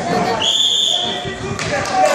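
Referee's whistle blown once, a steady shrill note of about a second, stopping the wrestling action. Spectators' voices run underneath.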